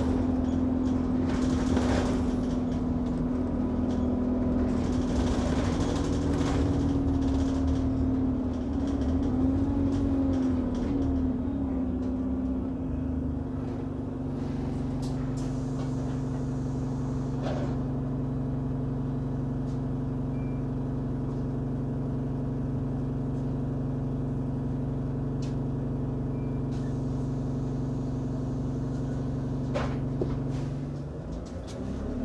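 Cabin sound of an Alexander Dennis Enviro200 Dart single-deck bus under way: the diesel engine and drivetrain hum steadily, wavering in pitch about ten seconds in, then settling to a steadier, slightly quieter hum from about fourteen seconds.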